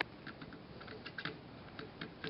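Faint, scattered light clicks of a metal cleaning pin and multi-tool being worked against and into the gas block of a SCAR 17 rifle.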